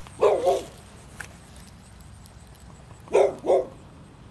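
A dog barking: two quick double barks, one just after the start and another about three seconds later.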